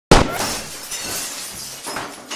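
A loud, sudden crash, followed by a long scattering tail with a few smaller crashes.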